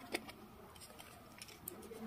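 Faint clicks and taps of fingers on the GoPro Hero 11 Black's plastic battery door as its latch is pushed and the door swings open: one click just after the start, a couple more near the end.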